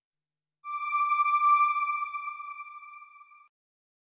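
A single electronic chime note from the channel's end-card sound logo. It comes in sharply about half a second in and fades out over about three seconds, then stops.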